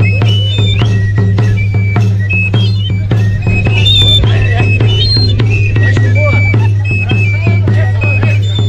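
Festival dance music: a large double-headed drum beaten with a stick in a quick, steady beat, with a high piping melody over it and a low steady drone underneath.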